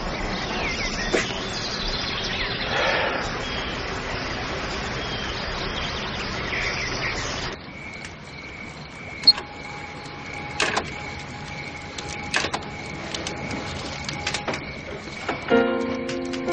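Outdoor woodland ambience: a steady hiss with a few faint bird chirps. It cuts off suddenly about halfway through to a quieter room tone with a faint steady hum and a few sharp clicks. Soft music comes in just before the end.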